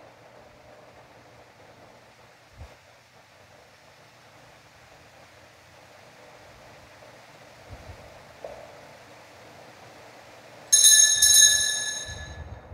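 Quiet room tone with a faint knock. About eleven seconds in, a bright bell rings loudly, struck two or three times in quick succession and left to ring out.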